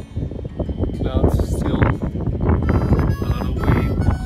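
Strong wind buffeting the microphone in gusts, a deep rumble throughout, with faint voice-like tones over it.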